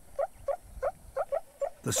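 Meerkat alarm calls played back from a recording: a run of short, evenly spaced calls, each a quick upward flick, about four a second.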